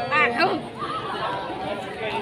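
Several people talking in casual conversation.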